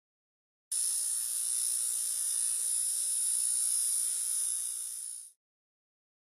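Electronic static-like hiss with a bright, high-pitched buzz: a synthetic sound effect that cuts in abruptly about a second in, holds steady and tapers off near the end.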